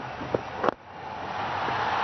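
A sharp knock, then a broad crowd-like roar in the cricket broadcast sound swelling steadily over the next second.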